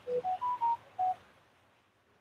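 Short electronic jingle: five clean beep-like notes climbing in pitch and then dropping back, over about a second, typical of a phone notification tone.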